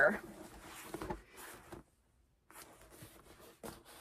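A pause after speech: faint room tone with a few soft clicks, and a brief cut to total silence about halfway through.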